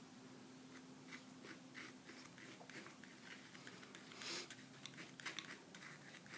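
Faint scraping and tapping of a palette knife working oil paint on gessoed canvas: a run of short strokes, a little louder about four seconds in, over a faint steady hum.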